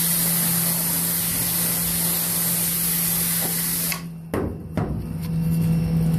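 High-pressure water jet spraying with a steady hiss, cutting off suddenly about four seconds in. Under it runs a low steady hum, with a couple of knocks just after the spray stops.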